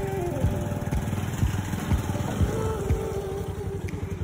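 Motorcycle running along the road, with engine and road noise and wind rumbling on the microphone.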